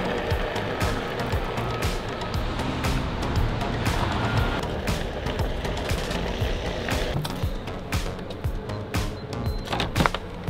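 Background music over the rolling rumble of a Onewheel XR's single wheel on concrete sidewalk, with frequent sharp clicks.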